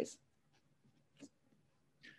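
Near silence: room tone, with one faint short click a little over a second in.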